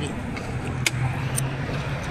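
A car engine idling with a steady low hum, with two sharp clicks, one about a second in and another half a second later.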